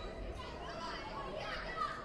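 Indistinct chatter and calls from many voices in a large sports hall, several of them high-pitched, with one louder call near the end.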